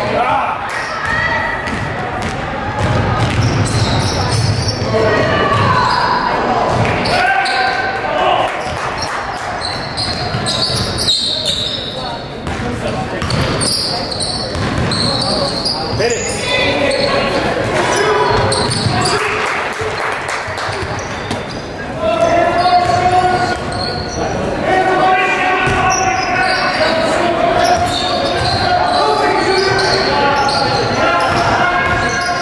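A basketball game in a large echoing gym: a ball bouncing on the hardwood floor and shouting voices from players and spectators, the voices rising near the end.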